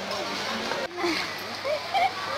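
Indistinct voices of people talking, over a low steady background hum; the sound breaks off sharply for a moment a little under a second in.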